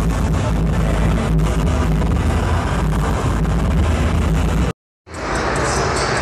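Loud music with heavy bass over the hubbub of a crowded hall. It drops out to silence for a moment near the end, then starts again.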